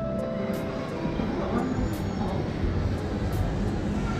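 Background music over a steady low rumble, with faint voices in the background.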